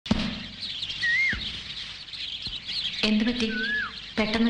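Birds chirping steadily in the background, with a clear whistled call that rises then falls, heard twice.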